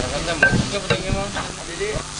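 Indistinct chatter of several people, with a few knocks and clatter of handling in the first half.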